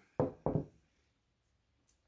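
Two quick knocks about a third of a second apart, as a plant pot is handled and set down on a hard surface.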